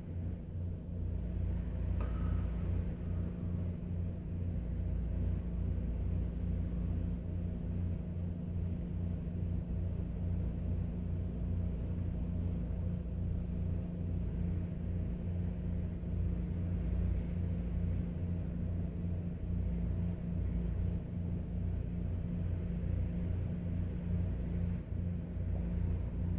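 Straight razor scraping through lathered stubble, faint crisp scratching in short runs of strokes, over a steady low hum.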